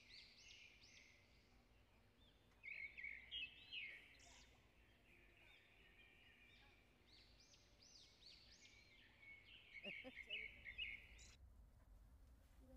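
Small birds chirping: many short, high calls overlapping, louder in two spells about three seconds in and again around ten seconds, then cutting off suddenly shortly before the end.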